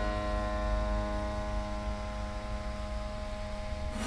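Strings of a dismantled piano's frame ringing on after being plucked, several notes sounding together and slowly fading, over a steady low hum.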